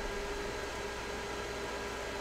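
Steady background hiss with a faint steady hum, without any distinct events: room tone.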